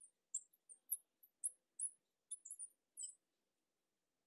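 Marker tip squeaking on a glass lightboard while words are written: a faint, irregular run of about a dozen short, high squeaks.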